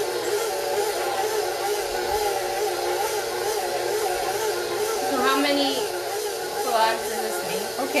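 KitchenAid stand mixer running steadily, its motor hum wavering in pitch as the dough hook kneads a soft, moist bread dough.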